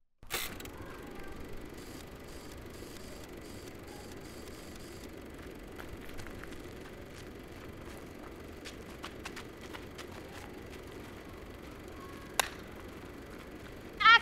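Steady outdoor background noise with no one speaking, with a few faint clicks and one sharp click near the end.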